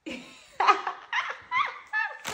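A woman laughing in several short bursts.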